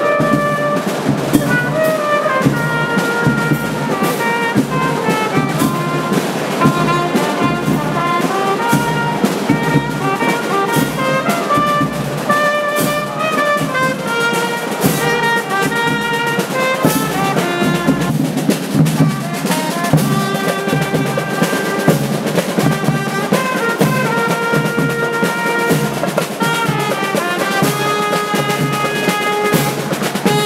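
A marching band playing a melody: trumpets and other brass carry the tune over a steady beat of drums.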